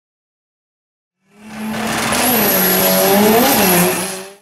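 Race car engine running with tyre noise. It swells in a little over a second in, with a wavering engine note and a steady high whine above it, then dies away quickly at the end.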